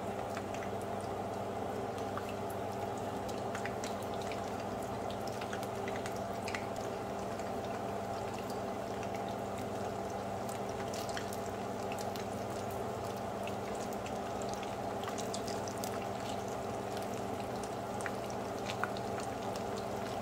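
Egg rolls frying in shallow oil in a frying pan: a steady sizzle and bubbling, with scattered small crackles and pops, over a steady low hum.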